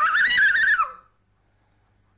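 A young girl's high-pitched squeal that wavers up and down and cuts off about a second in, followed by near silence.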